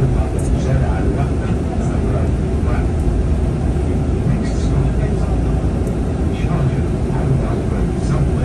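Bus engine and road noise heard from inside the moving bus: a steady low rumble. Faint indistinct voices sound over it.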